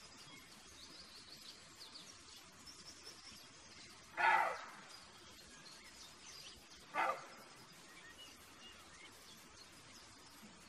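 Roe deer buck barking twice, short hoarse calls about three seconds apart, the first longer and louder. Faint birdsong in the background.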